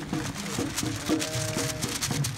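Music playing, with a held note starting about halfway through, over short clicks and crowd noise.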